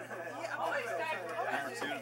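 Chatter: several people talking at once, the voices overlapping.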